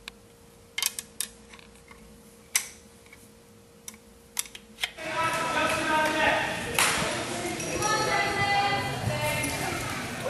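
A handful of sharp clicks and taps. About halfway through, the chatter of many voices in a large, echoing gymnasium takes over.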